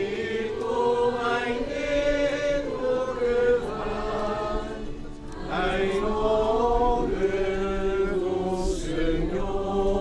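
A group of voices singing a slow hymn in unison, in long held phrases with short breaks between them.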